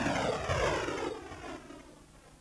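A whooshing title sound effect whose tones all fall steadily in pitch as it fades away toward the end.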